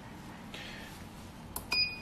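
A single short electronic beep with a click at its onset, about a second and a half in, over low room noise.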